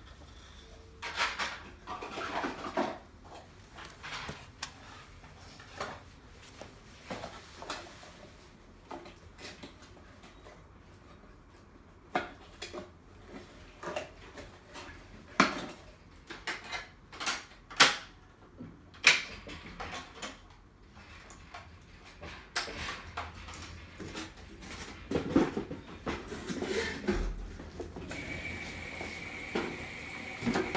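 Whirlpool front-load washer running a cycle, with irregular clicks and knocks over a faint low hum. A steady high-pitched tone begins near the end.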